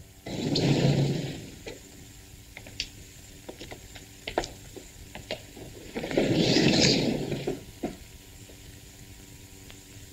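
A sliding wall panel door rolling open with a noisy swish lasting about a second, and again about six seconds in. A few faint taps come in between.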